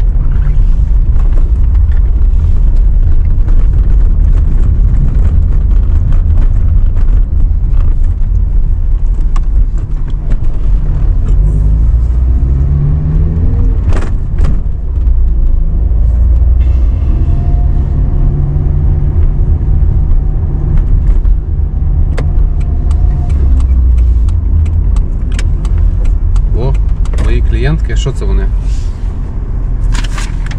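Car engine and road rumble heard from inside the cabin while driving, the engine pitch rising and falling as the car speeds up and slows. A single sharp click about halfway through.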